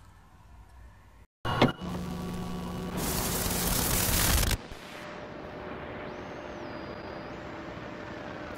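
Logo-intro sound effects: a sudden hit, then a rush of static-like noise that grows louder and cuts off sharply about four and a half seconds in. A quieter, steady hiss follows, with a thin high tone that steps up and down.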